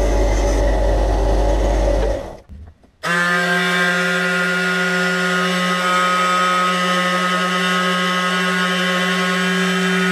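A benchtop disc sander running and grinding the edge of a small piece of pallet wood, cutting off about two seconds in. After a second's gap a handheld Ryobi detail sander comes in suddenly and runs steadily with a humming pitch, sanding the wood.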